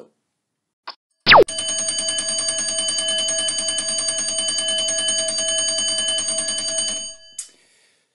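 Countdown timer's end alarm: a quick falling swoop, then a fast, even ringing that runs for about six seconds and stops abruptly.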